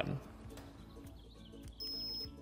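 A short, steady, high-pitched electronic beep from a Topeak SmartGauge D2 digital tyre pressure gauge near the end, as a button on the gauge is pressed, over faint background music.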